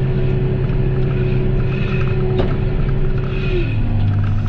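John Deere 6115R tractor engine running steadily under load while pulling a seed drill, heard inside the cab. A steady whine rides over the engine hum and drops in pitch near the end. There is a single click partway through.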